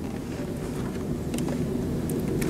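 Steady low rumble of room noise in a lecture auditorium, picked up by the lectern microphone, with a few faint clicks.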